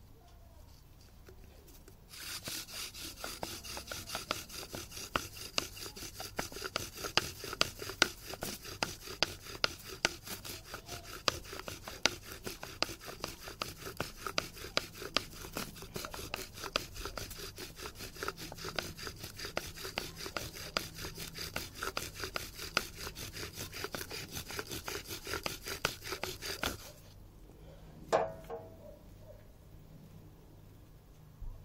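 Bow drill in use: a poplar spindle spun back and forth by a bow, rubbing steadily against the wooden hearth board with a regular click at each bow stroke. It starts about two seconds in and stops a few seconds before the end.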